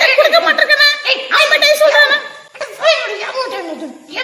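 A very high-pitched puppet-character voice chattering and chuckling, with a short break about two and a half seconds in.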